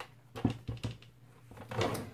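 A sheet of foam paper being handled and set on a plastic paper trimmer: a few light knocks about half a second in, then more rustling and knocking near the end.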